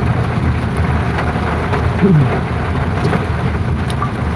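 Vehicle engine and road noise heard from inside the cabin while riding: a steady low rumble with a hiss over it.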